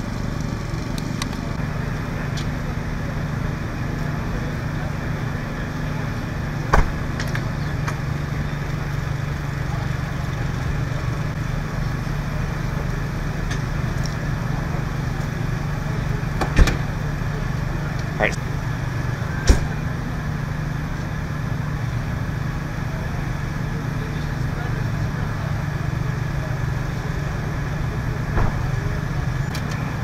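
A steady engine drone at idle, with about four short, sharp metallic knocks: one about a fifth of the way in and three clustered a little past halfway.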